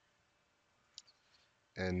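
A sharp click from a computer keyboard key about a second in, followed by two fainter clicks, as the highlighted lines of text are deleted.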